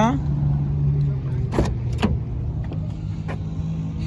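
Kia Sorento driver's door being opened: two sharp clicks of the handle and latch about a second and a half in, with fainter knocks after, over a steady low hum.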